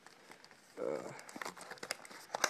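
Packaging rustling and crinkling as an item is worked out of a box with foam packing peanuts, with a scatter of small sharp clicks in the second half.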